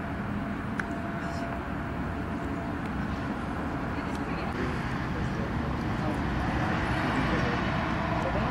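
Steady low outdoor rumble at a football training ground, with faint voices of players calling that become clearer near the end.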